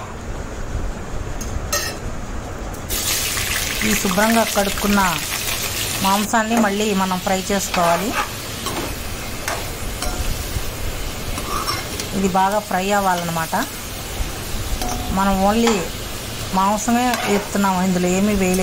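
Food frying in hot oil in a pan. The sizzle comes in sharply about three seconds in, loudest for a few seconds, then goes on steadily while it is stirred.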